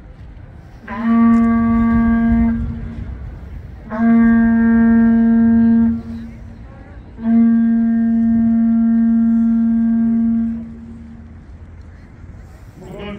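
A traditional Korean horn sounds three long blasts, each held on the same steady low note, the third the longest.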